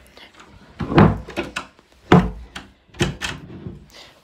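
A bedroom door is pushed to and bangs against its frame three times, the first two knocks the loudest, without latching: the door no longer closes properly.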